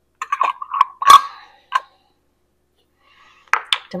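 Glass canning jars clinking and knocking against each other and a metal steam canner as they are handled and set in place. There are several sharp clinks in the first two seconds, the loudest about a second in with a brief ring, then a pause and a few more clicks near the end.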